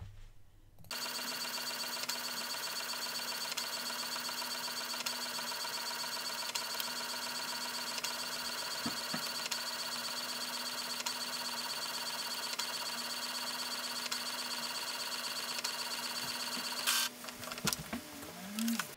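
Epson EcoTank ET-3760 inkjet printer running a print job: a steady mechanical whir with a fine rapid pulse. It starts about a second in and stops with a click about a second before the end.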